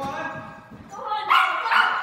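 Small dog barking twice in quick succession, loud, a little over a second in, while excited during an agility run.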